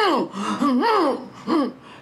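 A woman's strained, wordless vocal sounds: about four short gasping groans that swoop up and down in pitch. They show the choked, constricted voice that comes when the body is held restrained, the way she produced the demon's voice.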